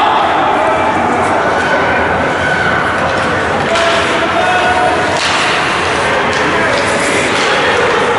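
Ice rink game sound: spectators' steady indistinct chatter and shouting, with several sharp knocks of puck and sticks against the boards in the second half.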